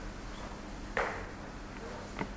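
Quiet room tone with one short, sharp tap about a second in, with a brief ring after it.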